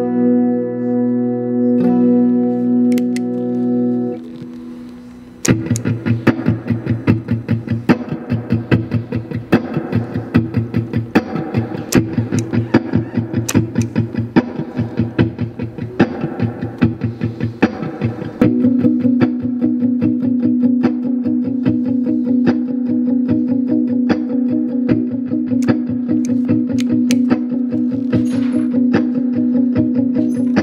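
1976 Fender Stratocaster electric guitar played through an amplifier on its neck and middle pickups together. A held chord rings for about four seconds and fades. About five seconds in, fast rhythmic picking starts, and over the last third a sustained low note rings under it.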